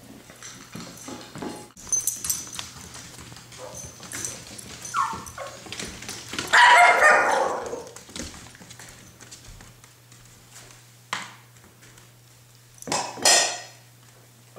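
Alaskan Klee Kai 'talking' in excitement over food: a run of short whines and yips, the loudest a long drawn-out call about seven seconds in, with two more short calls near the end.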